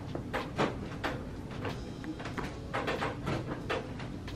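A series of irregular light clicks and knocks, a few a second, over a low steady hum.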